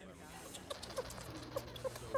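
A sugar glider making a series of short, faint squeaks over quiet room tone.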